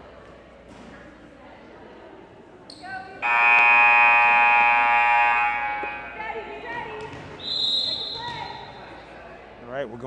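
A gym scoreboard buzzer sounds loud and steady for about two and a half seconds, starting about three seconds in. A few seconds later comes a short, high referee's whistle blast.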